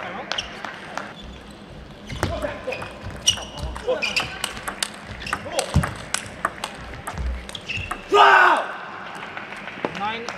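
Table tennis ball bouncing and clicking between points, with short sneaker squeaks on the court floor and voices in the hall. A brief loud squeal about eight seconds in.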